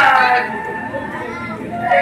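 An actor's voice declaiming Bhaona stage dialogue in a drawn-out, half-sung style, loud at first, softer through the middle and rising again near the end.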